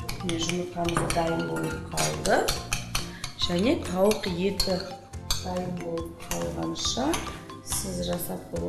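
A fork clinking and scraping against a bowl in repeated quick strikes as a mixture is stirred, with background music playing underneath.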